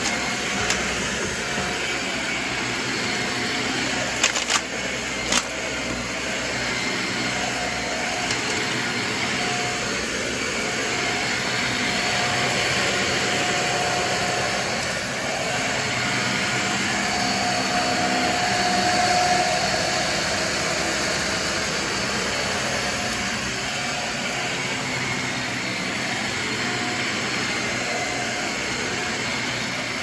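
Dyson Ball upright vacuum cleaner running steadily as it is pushed back and forth over carpet, with a few sharp clicks about four to five seconds in.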